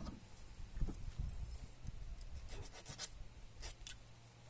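Handling noise: a jacket sleeve brushing close by, then a quick cluster of light clicks and scrapes from about two and a half seconds in as wire and a hand tool are handled on a wooden bench.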